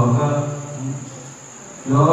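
A man singing a Malayalam poem into a handheld microphone: a sung line fades away over the first second, there is a short lull, and the singing picks up again just before the end.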